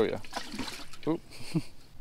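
Water trickling and splashing faintly in a bass boat's open livewell as a fish is held over it, under brief talk.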